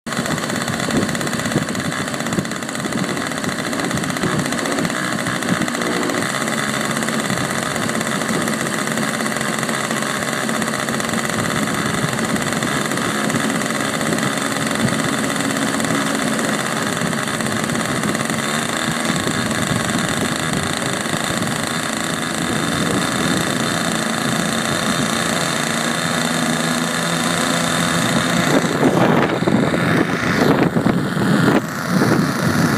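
KnB .61 two-stroke glow engine on a large twin-engine RC model plane running steadily at idle, with a glow-plug igniter attached. Near the end it gets louder and rougher.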